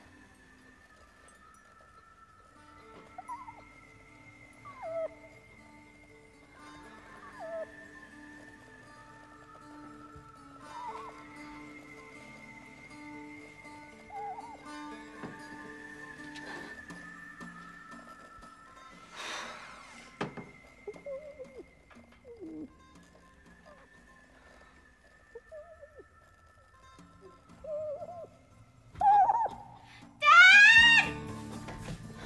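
Eerie music score of steady held tones. Every few seconds comes a short, high, squealing cry that rises or falls in pitch: the strange, scary noise heard from behind a bedroom wall. Near the end, a loud rising cry.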